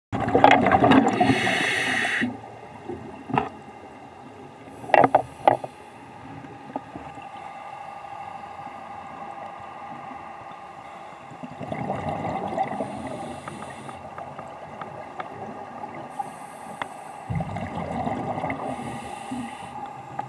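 Underwater scuba breathing through a regulator: hissing breaths and bubbling swells recurring every few seconds, loudest in the first two seconds, with scattered sharp clicks.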